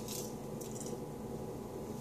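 Faint chewing of a candy chocolate rock, with a few soft crackles in the first second, over a steady electrical hum.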